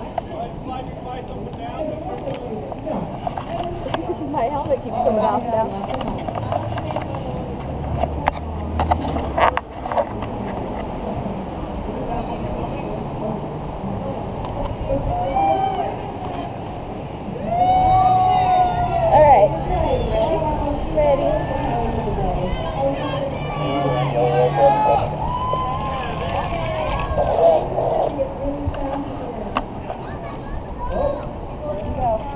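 Indistinct voices, mostly in the second half, over a steady rushing background, with a few sharp clicks about eight to ten seconds in.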